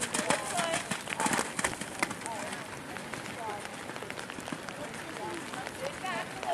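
Hoofbeats of a horse cantering on wet arena footing, sharpest in the first second and a half, then fading as the horse moves away.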